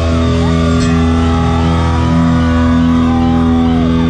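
Live punk/thrash band with heavily distorted electric guitars and bass holding a sustained low chord. Higher guitar notes slide up and down above it.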